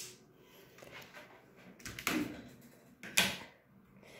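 A click and a few short knocks and rustles of objects being handled and set down on a work table.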